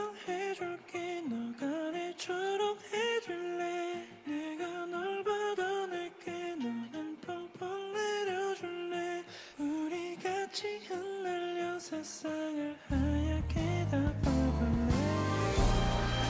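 Live boy-band performance: a male voice sings a soft, gliding melody over light accompaniment. About thirteen seconds in, the full band comes in with bass and drums and the music gets louder.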